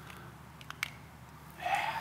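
A few faint, short clicks over a low steady hum.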